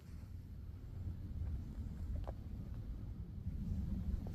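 Low, steady rumbling noise on the microphone, with a few faint clicks about two seconds in.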